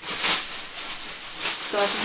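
Large thin plastic tyre-storage bag rustling and crinkling as it is unfolded and shaken out, in irregular swells, loudest about a third of a second in.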